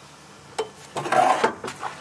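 Stainless steel swim ladder being pulled out of its stowage compartment on a boat: a click, then metal scraping and clattering for about half a second, and another click near the end.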